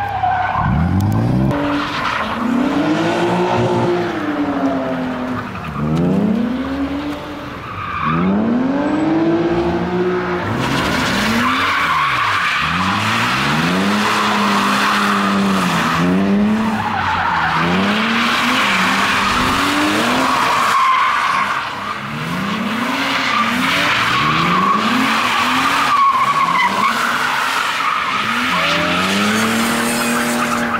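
BMW E36 drifting, its straight-six engine revving up and falling back over and over, every second or two, as the tyres squeal and skid on tarmac.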